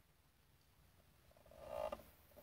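Hushed church interior, then near the end a short creak of about half a second from a wooden pew as someone settles onto it.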